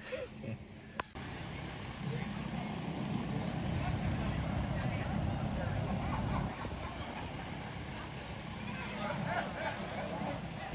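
A man laughs briefly. Then, from about a second in, people's voices chatter in the background over a low steady rumble.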